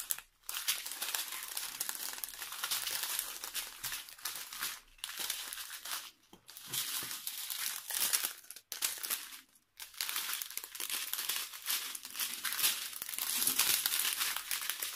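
Small clear plastic bags of diamond-painting drills crinkling continuously as they are handled and shuffled through, with a few brief pauses.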